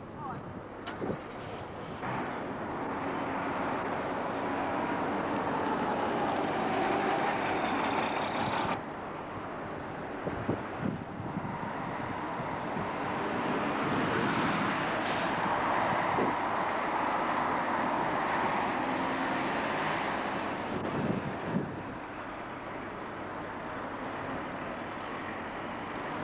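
Diesel bus and coach engines running at a bus station, with a coach moving close by; the engine noise swells to its loudest in the middle and fades after about 21 seconds. A few short knocks are heard along the way.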